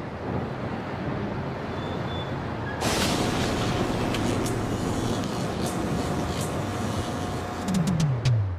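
A steady wash of noise like street traffic that gets louder and harsher about three seconds in, with scattered clicks. Near the end a falling sweep leads into music.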